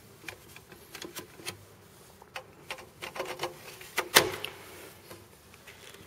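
Scattered light clicks and knocks of handling around an open metal rackmount server case, with one sharper knock about four seconds in.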